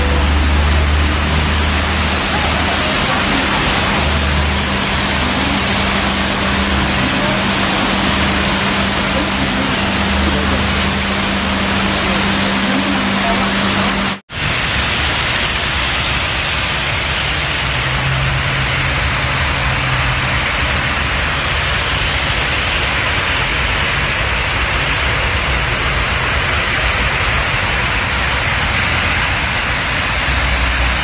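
Heavy rain falling in a steady loud hiss over a street, with a low steady hum underneath in the first half. About halfway the sound cuts out for a moment, then the rain hiss carries on, brighter.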